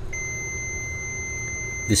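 Fluke digital multimeter's continuity beeper sounding one steady high beep for nearly two seconds, its probes across terminals 1 and 2 of a pressure switch: the contacts are closed, as they are at low pressure.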